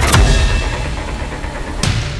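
A sudden loud low boom that fades into a deep rumble, then a short swoosh near the end, laid over the film's music.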